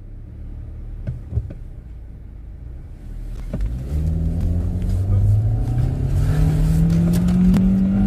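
Car engine heard from inside the cabin, pulling away and accelerating: its pitch rises steadily from about three and a half seconds in, after a few light clicks near the start.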